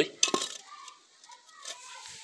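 Hollow fired-clay brick being handled and set down, with a few sharp clinks and knocks of ceramic in the first half second.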